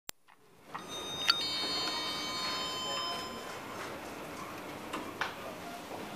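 OTIS 2000 traction elevator answering a hall call: a sharp click, then a bell-like arrival chime of several tones that rings out and fades over about two seconds. Two short knocks follow near the end, in keeping with the doors opening.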